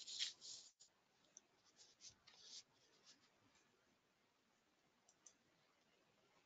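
Near silence, with a few faint, short scratchy noises in the first two and a half seconds, then only faint room hiss.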